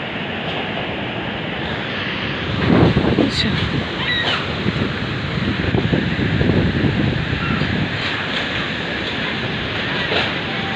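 Gusty typhoon wind buffeting the phone's microphone, with a strong gust a little under three seconds in and more buffeting through the middle.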